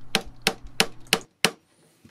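Hammer tapping a wooden block set against a banjo's tension hoop, about seven sharp taps in quick succession that stop about a second and a half in. The tension brackets are loosened and the taps are working the hoop free to reposition it.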